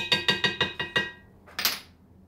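A measuring spoon tapped quickly against glass, about ten ringing clinks in the first second, followed by a short hiss-like scrape near the end.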